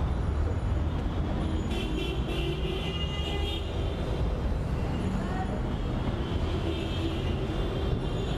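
Busy city road traffic: a steady low rumble of engines, with a high-pitched horn sounding for about two seconds near the start.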